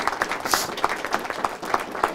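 A small audience clapping, a dense patter of irregular hand claps.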